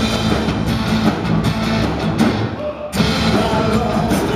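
Live rock band playing: electric and acoustic guitars, bass and drum kit. A little past halfway the band thins out for about half a second, then comes back in full.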